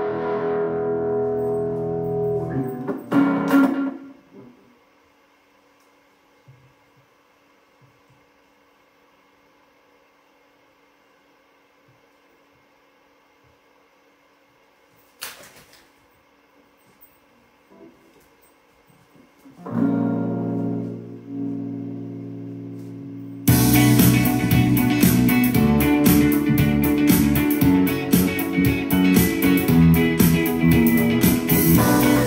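Electric guitar chords ring out and die away, followed by a long near-silent gap broken by a single click. Then another guitar chord sounds, and about 23 seconds in a full funk groove with drums and bass kicks in loudly.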